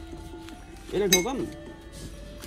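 Background music with a brief voice, and a single sharp clink of a hard object about a second in.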